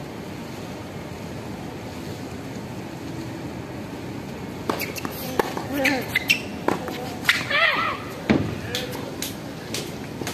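Tennis ball struck by rackets and bouncing on a hard court in a rally that starts about halfway through: a run of sharp hits spaced under a second apart. A voice calls out twice among the hits. A steady outdoor hum runs underneath.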